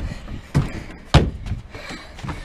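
Parkour vault landing on a wooden deck: two heavy thuds, the second and louder just past a second in, then lighter running footsteps on the boards.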